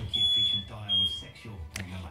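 Smoke alarm sounding: a high-pitched beep repeated, two beeps of about half a second each, the second ending just over a second in.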